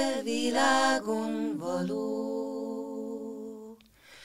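Three women's voices singing a cappella in close harmony. The lines move in pitch for the first two seconds, then settle on a held chord that fades out near the end.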